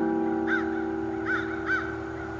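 The last strummed chord of an acoustic piccolo bass guitar ringing out and slowly fading. A bird calls over it with three short notes, the second and third close together near the end.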